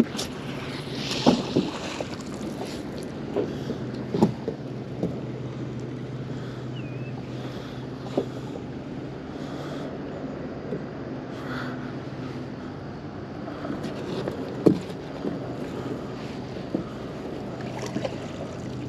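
Magnet-fishing rope being hauled in by hand over the side of a small boat, with a few sharp knocks and light water sounds over a steady low hum.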